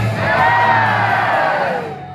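Audience cheering as the backing music of a stage song ends, with one long whoop that slides down in pitch over about a second and a half.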